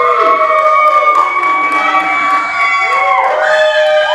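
Loud cheering for a graduate: several long, held high whoops overlapping, each sliding up at its start and down at its end, with a few claps.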